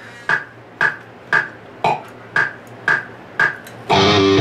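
Metronome click track ticking steadily at about two clicks a second, counting in; an electric guitar comes in loudly right at the end.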